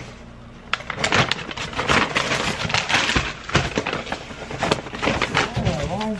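Paper grocery bag and packaging rustling and crinkling irregularly as items are handled and unpacked, starting about a second in after a brief quieter moment.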